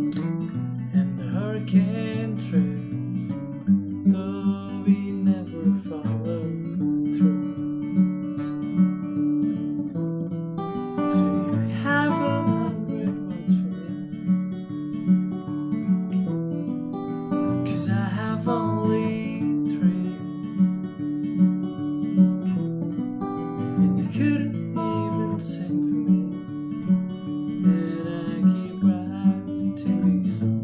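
Acoustic guitar fingerpicked in a steady, repeating pattern, with the bass notes changing every few seconds.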